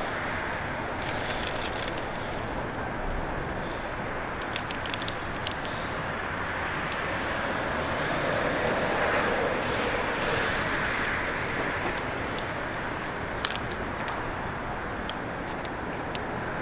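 Steady outdoor city background noise of distant traffic, swelling for a few seconds around the middle, with a few faint sharp ticks.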